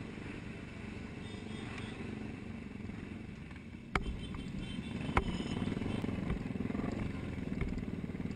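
A large pack of motorcycles riding together, their engines making a steady, continuous noise, with two sharp knocks about four and five seconds in.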